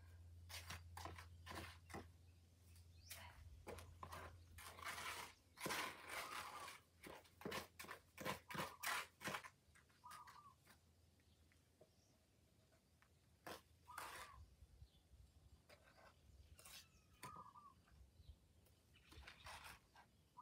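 Faint crunching and scraping noises in short clusters, busiest around the middle, from work with a bucket on a dry dirt slope. A brief call recurs several times.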